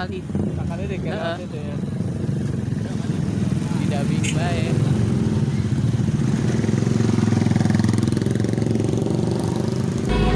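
Motorcycle engine running while riding along, growing louder after the first couple of seconds. People's voices are heard briefly near the start.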